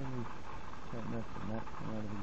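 A man's voice in short, drawn-out fragments over steady background noise.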